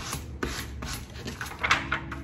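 Fine-grit sandpaper block rubbed back and forth over a sheet of clear stamps on paper: a series of short scraping strokes, the loudest near the end, scuffing the stamps so ink will stick to them.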